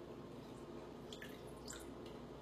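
Faint drips and small wet sounds of half a lime being squeezed into a glass, a few brief drops about a second in and again shortly after.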